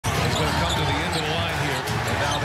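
Basketball game audio from an arena: sounds from the court with voices in the background.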